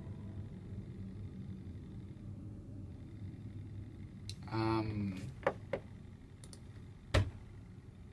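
Quiet small-room tone after the music has stopped. About halfway through comes one short voiced sound, then a few sharp clicks and a thump near the end.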